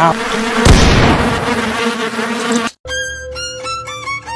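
Cartoon sound effect of flies buzzing around a smelly bare foot, with a loud burst about a second in. The buzzing cuts off abruptly near the end and a violin tune begins.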